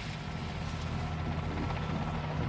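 Helicopter running steadily overhead: a continuous low drone with an even hum, no rises or breaks.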